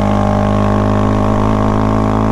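Honda Grom's 125cc single-cylinder engine running under way at a steady speed, one even note with no revving up or down.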